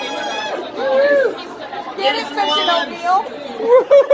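People's voices chattering and calling out in a large hall, with high, sliding exclamations.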